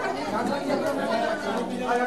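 Overlapping chatter of a group of people all talking at once, with no single voice standing out.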